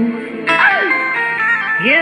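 A Meena folk song playing: a melody with sliding pitches between sung lines, and the singer beginning the next line near the end.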